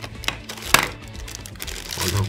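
A few sharp plastic clicks and knocks as a USB power cable and a plastic power adapter are handled, the loudest about three-quarters of a second in, over steady background music.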